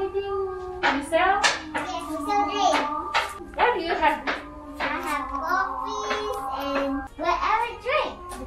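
A young child speaking short English phrases, asking what there is to sell and to drink, with several sharp hand slaps mixed in.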